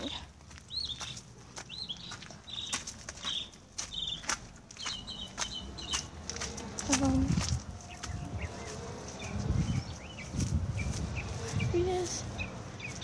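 A small bird chirping, short high calls repeated about once or twice a second, over footsteps and the knocks of a handheld phone. In the second half, low rumbling bursts take over.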